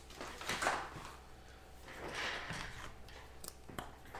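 Paper sliding and rustling on a tabletop in two soft swishes, followed by a few light taps near the end.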